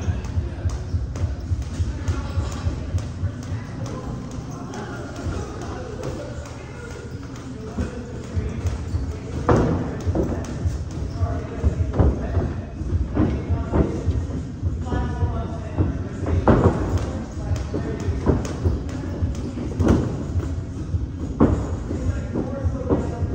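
Gloved punches and kicks landing during MMA sparring: several sharp thuds a few seconds apart, over a steady bed of indistinct voices and background music.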